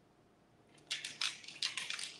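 Near silence, then about three-quarters of a second in a dense run of irregular crackling and crinkling starts and keeps going.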